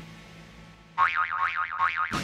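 Backing music cuts off, and after about a second a comic 'boing' sound effect plays: a warbling tone that wobbles up and down about five times a second.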